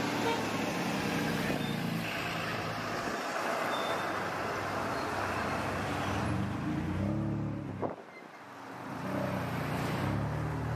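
Road traffic: the steady hum and rush of motor vehicles passing on a street, with a short rising chirp about eight seconds in followed by a brief lull before the traffic noise builds again.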